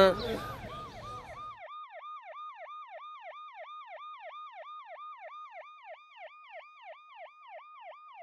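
Police siren on rapid yelp, its pitch sweeping up and down about three and a half times a second. Street noise and a voice underneath cut out about a second and a half in, leaving the siren alone.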